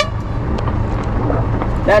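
A sailing yacht's inboard auxiliary motor running steadily under way, a low rumble, shortly before it is switched off for sailing.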